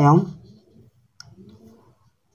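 A man's voice trails off at the end of a word, then a quiet pause broken by a single sharp click a little over a second in.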